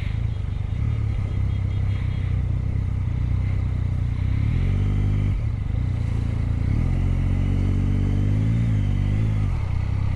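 Motorcycle engine idling, revved briefly about halfway, then pulling away with the revs rising and falling with the throttle.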